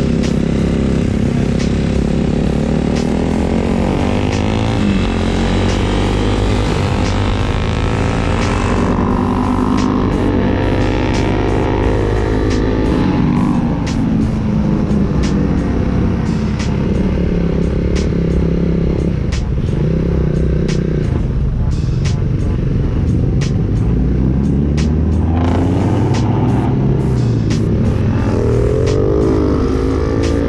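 Suzuki Raider 150 motorcycle engines at full throttle, heard from on the bike with wind rushing past. The pitch climbs and falls again and again as they accelerate and shift through the gears.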